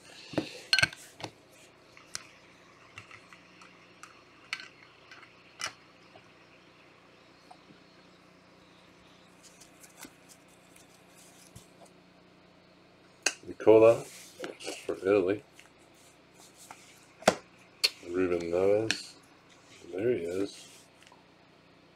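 Gloved hands handling trading cards and plastic card holders, making a scattering of light clicks and taps. A denser, louder stretch of handling noise follows in the last several seconds.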